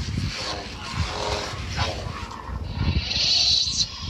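Electronic sounds from an interactive Yoda figure and toy lightsabers, mixed with handling knocks. A hiss starts about two and a half seconds in and lasts until shortly before the end.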